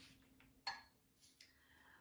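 A spoon clinks once, briefly, against a small glass jar as sugar substitute is scooped out, a little over half a second in; otherwise near silence with a couple of faint ticks.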